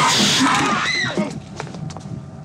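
Several people screaming and shouting over one another in panic, loud at first, then falling away about a second and a half in.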